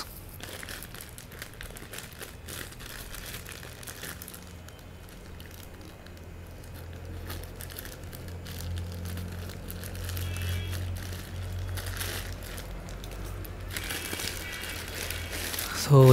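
Plastic courier mailer crinkling as it is cut open with scissors and handled, the crinkling getting louder near the end as the bag is pulled open. A steady low hum runs underneath.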